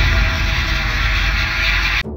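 Nitrous oxide hybrid rocket motor on a static test stand during a hot fire: a loud, steady rushing roar.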